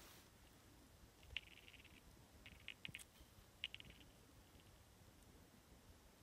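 Near silence, broken three times by a faint, brief run of rapid clicking.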